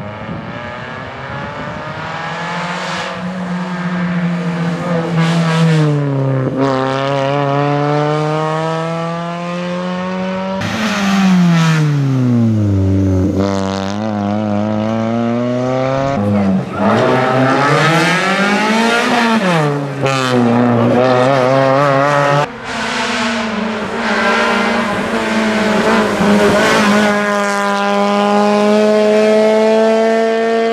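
Suzuki Swift rally car's four-cylinder engine at full throttle on a tarmac rally stage. The note climbs steadily through each gear and drops at each upshift or lift for a corner, several times over. The engine note jumps abruptly a few times.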